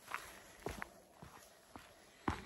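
Faint footsteps of a hiker walking on a thin layer of snow over a dirt trail, a few separate steps.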